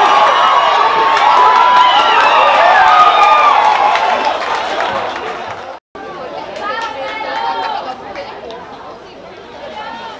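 Many voices shouting and chattering at once from a sideline crowd of players and spectators at an amateur American football game. The noise is loud for about the first five seconds, cuts off abruptly, and gives way to quieter chatter and occasional shouts.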